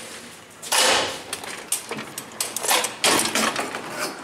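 A glass entry door being pushed open while walking out to the street: two short rushes of noise, about a second in and again about three seconds in, with scattered clicks from the door hardware.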